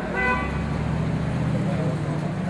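A single short car-horn toot right at the start, about half a second long, over the steady low rumble of street traffic.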